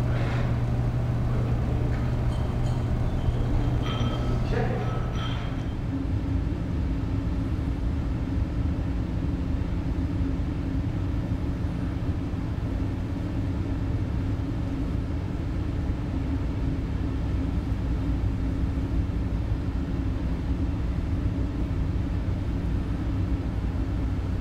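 A steady low hum runs throughout, with faint voices in the first five seconds.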